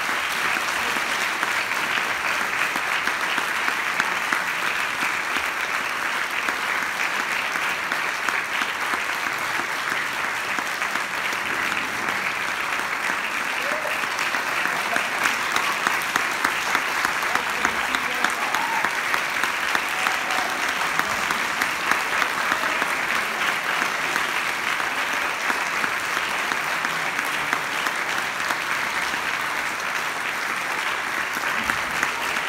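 Concert hall audience applauding steadily.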